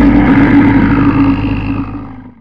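Loud, deep logo sting sound effect, holding steady for about two seconds and then fading out.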